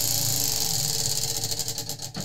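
Tabletop prize wheel spinning, its pointer clicking rapidly against the pegs. The clicks slow and spread out toward the end as the wheel winds down.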